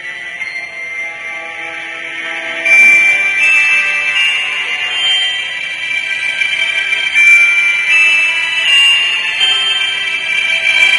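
Background music carried by high held notes that step from one pitch to another, growing louder about three seconds in.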